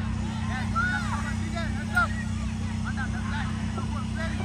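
Scattered short shouts and calls from players on a football pitch over a steady low mechanical hum, with one sharp knock about two seconds in.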